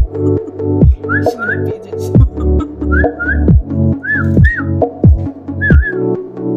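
Background music: a whistled melody of short gliding notes over sustained chords and a deep drum beat.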